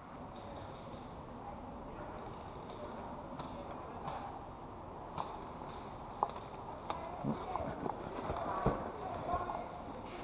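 Footsteps on leaf litter and rustling of kit as a player moves through woodland, with scattered faint clicks and knocks that become busier in the second half.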